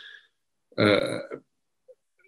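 Speech only: a man's single drawn-out hesitation syllable 'a', about a second in, lasting about half a second.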